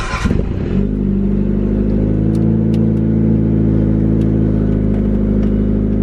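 Mitsubishi Lancer Evolution's turbocharged four-cylinder engine being started on a cold day: a brief crank that catches within the first second, then a steady idle.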